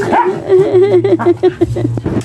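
Excited aspin dogs whining and yipping, with a quick run of short, high yelps in the middle.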